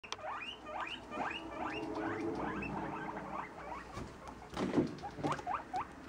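Guinea pigs wheeking: a quick series of short squeals, each rising in pitch, about three a second, growing sparser in the second half.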